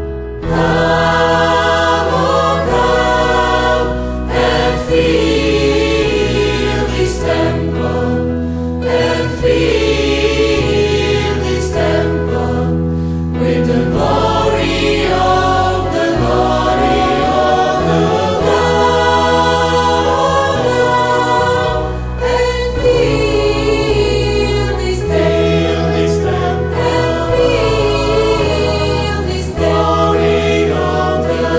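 A church choir singing a sacred song, with sustained low notes underneath the voices.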